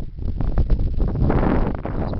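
Wind buffeting the camera's microphone, a loud, gusty noise that swells strongest around the middle.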